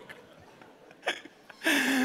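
A man laughing briefly into a handheld microphone: a short catch of breath about a second in, then a loud, breathy burst of laughter near the end.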